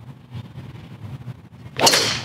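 Golf driver striking a teed ball: a single sharp, loud crack near the end, a well-struck drive.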